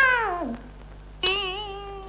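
Film song: a high voice holds a long note with vibrato that slides down and fades about half a second in, then a second, slightly lower held note begins just past a second in.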